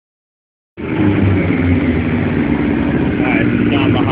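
Yamaha 750 motorcycle engine running steadily, cutting in abruptly under a second in. It is running again after its carburetors were cleaned and a missing carburetor needle replaced.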